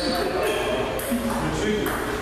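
Table tennis ball clicking off paddles and table in a rally, about two hits a second, with a short bright ring after each hit in a large echoing hall.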